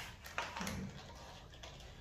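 A few faint, light metallic clicks from a wrench and bolts being worked at a motorcycle engine's oil filter cover.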